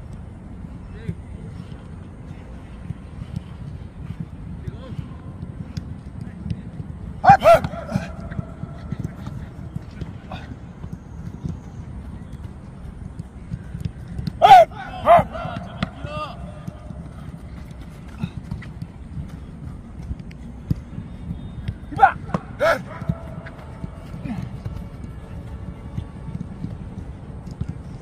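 Outdoor football training: a steady low rumble of wind on the microphone, broken three times by brief bursts of sharp ball kicks and short shouts from players on the pitch.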